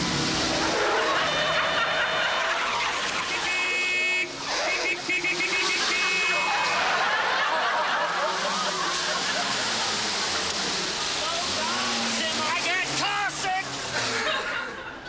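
Open jeep driving hard off the road in four-wheel drive, a loud rushing and rattling noise throughout, with men shouting and yelling over it.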